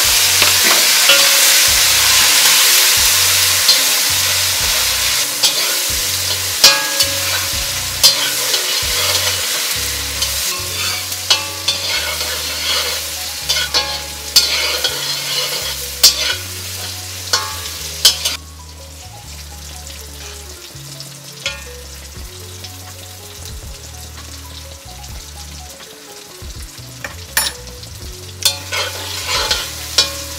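Chopped tomato frying in very hot oil in a kadai with potatoes: a loud sizzle that slowly dies down and then drops off sharply about eighteen seconds in, with a metal spatula scraping and clicking against the pan. The tomato's moisture is boiling off in the excess oil, driving some of it off.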